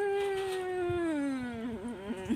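A woman's long closed-mouth "mmm", held for nearly two seconds and sliding slowly down in pitch, a reaction to the taste of sour mango; it wavers briefly near the end.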